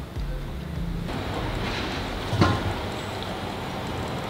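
Outdoor street noise with traffic, and a short sharp knock about two and a half seconds in.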